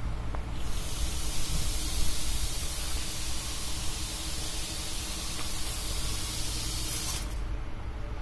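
Fish-counter misting nozzles spraying fine water mist over the display: a steady hiss that starts just under a second in and cuts off suddenly about a second before the end, over a low background rumble.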